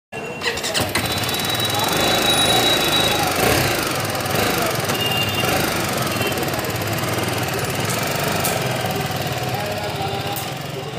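BMW G310 R's single-cylinder engine running under the rider, a little louder for a moment two to three seconds in, before the bike pulls away, with street noise and voices around it.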